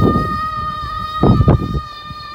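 A child's long, high-pitched squeal, held steady on one note for about two and a half seconds, while sliding downhill on a plastic sled.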